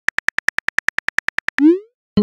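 Rapid phone keyboard clicks, about ten a second, as a text message is typed, then a short rising whoosh near the end as the message is sent.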